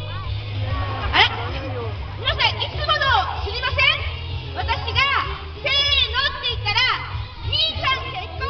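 High-pitched voices calling and shouting in short, shrill cries one after another, children's voices among them, over a steady low rumble.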